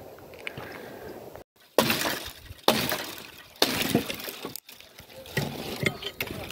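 Axe blows on dry dead wood: three sharp cracks about a second apart, each trailing off in splintering, followed by lighter knocks and clatter of branches.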